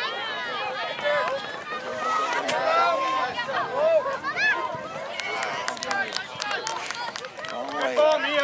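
Sideline spectators cheering and shouting over one another as a goal goes in, with scattered clapping from about five seconds in.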